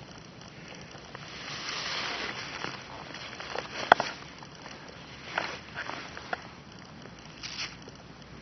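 Gloved fingers handling a freshly dug silver coin in loose soil, rubbing the dirt off it: a soft scraping rustle with one sharp click about four seconds in and a few light scrapes after.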